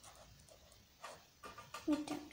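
Faint scratching of a ballpoint pen writing on notebook paper. About a second in come a few short louder sounds and a brief whine-like voiced sound, and a spoken word starts near the end.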